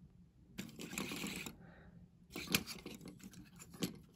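Handling noise: a soft rustle, then light rubbing with a couple of sharp clicks near the middle and end.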